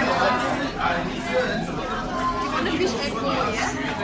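Speech: people talking, with chatter behind.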